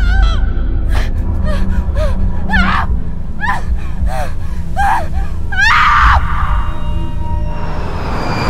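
A woman's terrified gasping sobs and cries, short and repeated about once a second, with a louder cry about six seconds in, over a dark low droning horror score. A rising whoosh of noise swells near the end.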